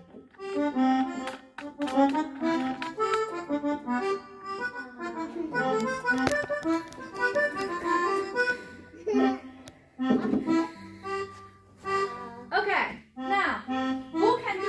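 Several digital keyboards played at once, each voice running through its own line of short held notes, the lines overlapping out of step.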